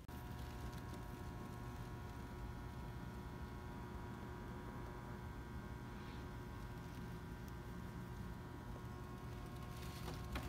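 Faint, steady room tone: a low hum with several fixed, unchanging tones above it, and nothing else happening.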